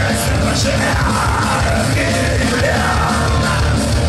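Punk rock band playing live: electric guitar, bass guitar and drums, loud and continuous, with a yelled lead vocal over the top.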